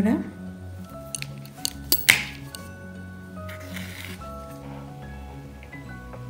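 Soft instrumental background music with steady held notes. A few sharp clicks from handling yarn and crochet tools come about one to two seconds in, the loudest just after two seconds.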